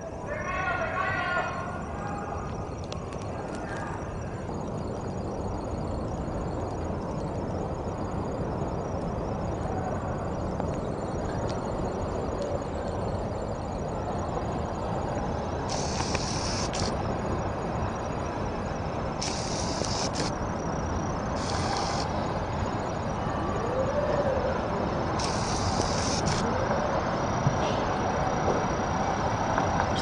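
Steady rushing noise of tsunami waves surging ashore, slowly growing louder. A man's voice is heard briefly at the start, and short bursts of high hiss come and go in the middle.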